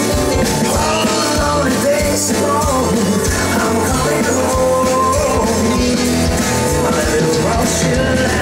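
Live rock band playing: a male lead vocalist singing over drums, bass, electric guitars and keyboards.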